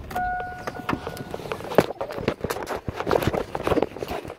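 Footsteps and knocks of a handheld phone being carried and jostled, with a steady beep-like tone lasting a little over a second near the start.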